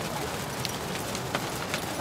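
Several horses walking and trotting on an arena's sand, their hoofbeats soft and irregular, with a few faint clicks, over a steady hiss.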